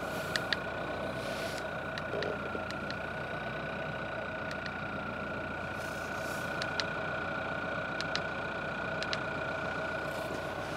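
Dacia Duster's engine idling steadily, with a constant whine over the hum. A dozen or so light clicks are scattered through it.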